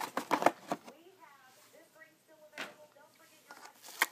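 Clicks and rattles of metal costume rings and their cardboard boxes being handled, a quick cluster in the first second and a single knock later. A faint voice is heard in the background.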